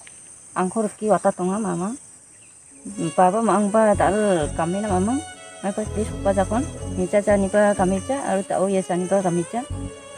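A voice singing a slow melody with a wavering, rising-and-falling pitch, breaking off briefly about two seconds in and then resuming, with low thuds underneath in the second half. A steady high insect drone, like crickets, runs behind it.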